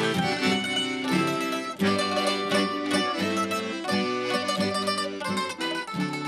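Piano accordion and a plucked string instrument playing a tune together: held accordion notes under quickly plucked strings.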